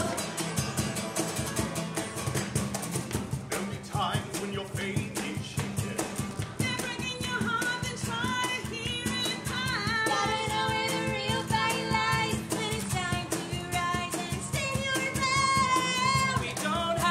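A group of voices singing a musical-theatre song to a strummed acoustic guitar with a steady beat. The opening seconds are mostly the rhythmic strumming, and several voices come in together from about six seconds in.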